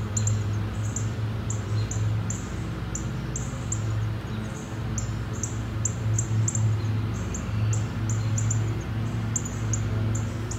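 Small birds chirping, a few short high chirps a second at uneven spacing, over a steady low hum.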